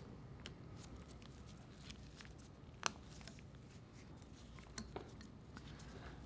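Faint handling sounds of snap-ring pliers fitting snap rings onto the steel pin of a valve's stem and hub link: scattered small metal clicks, the sharpest about three seconds in.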